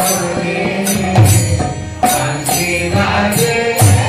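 Devotional chanting (kirtan): voices sing held notes over hand cymbals struck in a steady beat about twice a second, with low drum beats.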